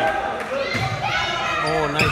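Several voices of players and spectators calling out, echoing in a large gymnasium.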